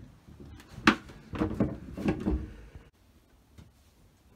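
Wooden knocks and clunks as a folded wooden table is handled and set into its stowed position: one sharp knock about a second in, then a few lighter knocks, before it goes quiet.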